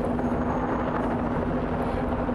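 A steady engine drone with a constant low hum, even in level throughout.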